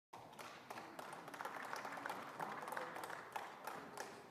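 Scattered applause from members of a parliamentary chamber, individual claps standing out rather than merging into a dense roar.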